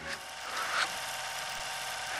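Transition sound effect of a TV programme's animated title bumper: a rushing, noise-like swish, brightest about half a second in, with no speech or music.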